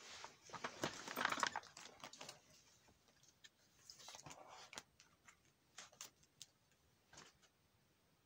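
Plastic card-sleeve pages in a ring binder being handled and turned: a rustle of plastic in the first two seconds, then scattered small clicks and crinkles, all faint.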